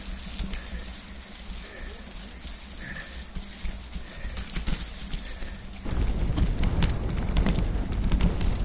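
Mountain bike rolling over a wet, muddy trail: tyre hiss and spatter with small clicks and rattles from the bike. About six seconds in it turns suddenly louder, with wind rumbling on the microphone.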